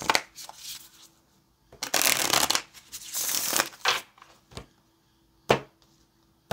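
A tarot deck being shuffled by hand: two spells of papery card rustling, with several sharp taps and clicks between them. The loudest tap comes about five and a half seconds in, as cards are squared and laid on a wooden table.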